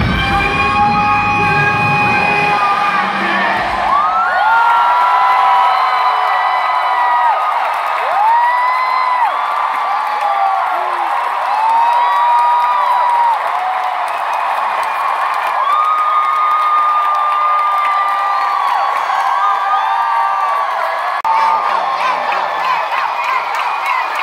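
A live rock band's music stops about four seconds in, giving way to a big arena crowd cheering, full of long, high shouts and screams that overlap.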